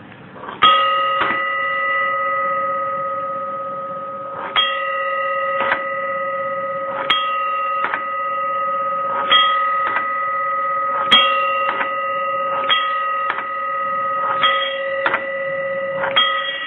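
Homemade electric bell: an electromagnet's steel plunger striking a stainless steel bowl about a dozen times at uneven intervals. Each strike sets the bowl ringing with several steady tones that hang on between strikes.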